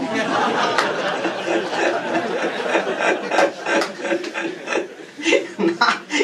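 A roomful of people laughing and chattering at once. A man's voice picks up again near the end.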